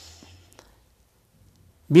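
A pause in a man's speech: a faint breathy hiss fades out over the first half second, then near silence until he starts speaking again at the very end.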